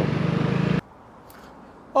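Vespa GTS300 scooter's single-cylinder four-stroke engine idling steadily with the scooter at a standstill. The engine stops abruptly under a second in, leaving only faint outdoor background.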